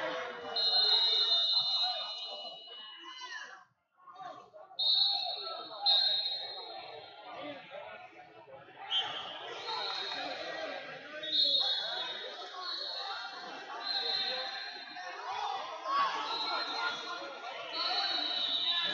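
Wrestling tournament hall with a din of voices from coaches and spectators. Over it come repeated high, steady tones, each lasting a second or two, eight or so times across the stretch. There is a short lull a few seconds in.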